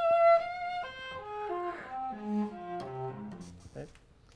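Solo cello played with the bow: a held high note with vibrato, then a phrase of shorter notes moving mostly downward, stopping just before the end. The playing shows a change of tone colour in the phrase.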